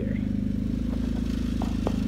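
Small engine running steadily at a constant speed, with a couple of light clicks in the middle.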